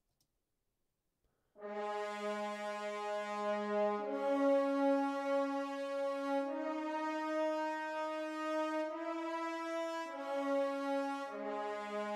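A sampled French horn section from an orchestral library plays a slow line of long held notes, about six of them, starting after a second and a half of silence.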